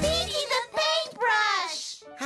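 End of a cartoon theme song: a voice sings the closing line, and the backing music stops about half a second in while the voice carries on alone.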